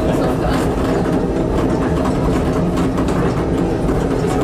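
Monorail train running along its track, heard from on board: a steady, loud drone with a low hum and a few held tones.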